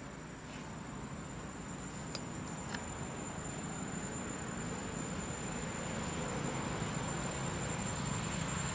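A steady high-pitched insect trill over a background hiss. A low rumble slowly grows louder, and a couple of faint clicks come about two and three seconds in.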